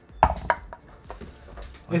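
A die dropped into a wooden dice tray: two sharp clacks within the first half second, then a few fainter clicks as it settles.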